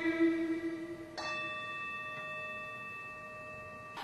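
The end of a held musical note fading out, then, about a second in, a single struck bell-like tone that rings on with a few steady pitches and slowly fades.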